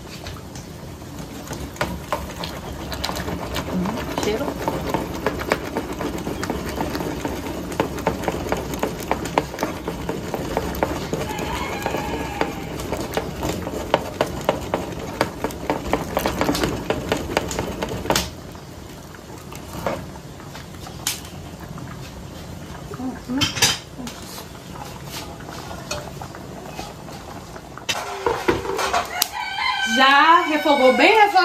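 A star-shaped metal bean masher worked up and down in an aluminium pot of cooked beans, knocking and scraping on the pot in rapid, uneven strokes for about the first eighteen seconds as the beans are mashed to thicken them. A rooster crows in the background.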